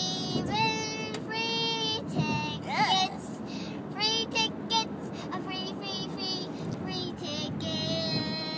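A young girl singing a song, a string of held notes with short breaks and a quick swoop up and down in pitch about three seconds in, over a low steady car-cabin rumble.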